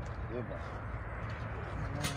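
A man's brief murmured voice about half a second in, over a steady low rumble.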